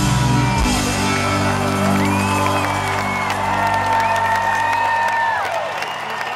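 A live rock band holds the last chord of a song, which rings on and fades out near the end, while a large stadium crowd whoops and cheers over it. Scattered clapping starts as the chord dies away.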